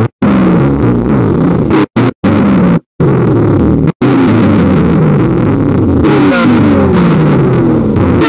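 Chopped, pitch-shifted sound clips edited into a Sparta-style remix with no backing beat. Repeated falling-pitch glides are stuttered by abrupt cuts to silence several times in the first four seconds, then run on unbroken to the end.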